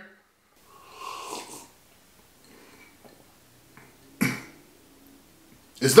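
A man breathing: a soft breath about a second in, then a shorter, louder breath about four seconds in.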